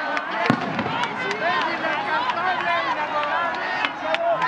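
Crowd of people at close range, many voices calling and shouting over each other at once, with scattered sharp clicks, the strongest about half a second in.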